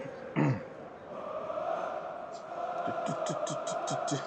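A man clears his throat once just after the start. A faint, steady background drone follows, with a quick run of short voice-like sounds in the second half.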